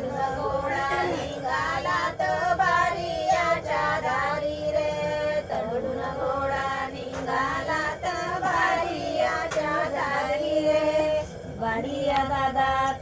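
A group of women singing a devotional ovi, the traditional grinding-mill song, together in continuous sung lines.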